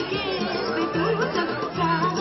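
Traditional folk music with a winding melody line, over crowd chatter.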